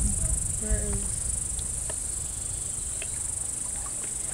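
Insects trilling, a continuous high-pitched shrill, with low wind rumble on the microphone at the start.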